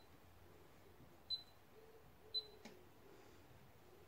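Glass-top hob's touch controls beeping as they are pressed: two short, high beeps about a second apart, with a faint click just after the second.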